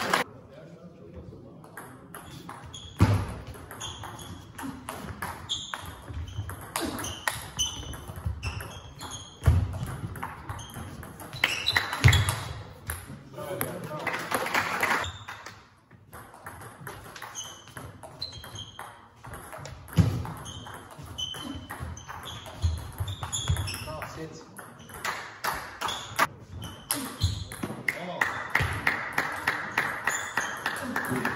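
Table tennis rallies: the plastic ball clicking off bats and table in quick runs of short pings, with pauses between points. A few louder thumps stand out.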